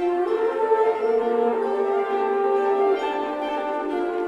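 A women's choir sings held chords with a string ensemble of violins. The notes move to new pitches every second or so.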